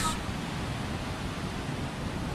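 Steady, even rush of ocean surf with wind on the microphone.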